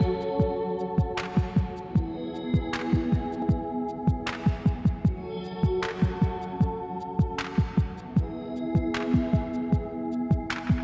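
Background music: held synth chords over a deep, pulsing kick drum, with a swell of hiss like a cymbal about every second and a half.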